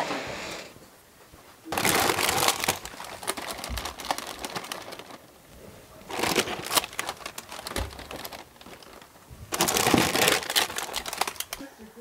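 Plastic grocery packaging and bags crinkling and rustling as they are handled while unpacking and shelving groceries, in three stretches of a few seconds each with quieter gaps between.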